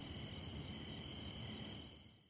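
Faint, steady high-pitched chirping, pulsing a few times a second over a low hiss, cutting off just before the end.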